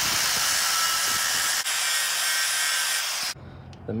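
Angle grinder grinding down a weld bead on the steel frame's step notch: a steady, high grinding noise that cuts off abruptly about three seconds in.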